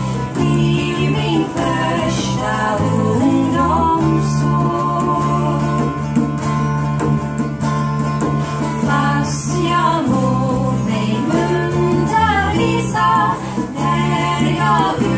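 Live acoustic folk music: guitar accompaniment with sustained low notes under a woman's voice singing a slow melody.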